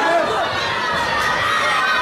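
Spectators shouting and cheering, many voices overlapping, as they urge on two kickboxers in the ring.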